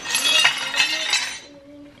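Broken shards of a white ceramic pumpkin serving dish clinking and rattling against each other for about a second and a half, then stopping. The dish arrived smashed in shipping.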